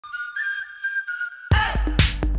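Intro theme music: a short whistled tune, then a loud beat with drums cuts in about one and a half seconds in.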